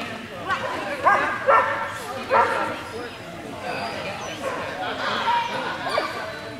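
A dog barking: about four sharp, loud barks in quick succession in the first two and a half seconds, over background chatter in a large echoing hall.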